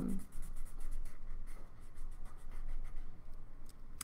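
Felt-tip marker rubbing on paper in many quick, short coloring strokes.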